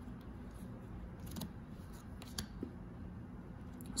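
Faint sliding and light snapping of paper playing cards as they are thumbed one by one from hand to hand, a few soft ticks standing out over a low steady hum.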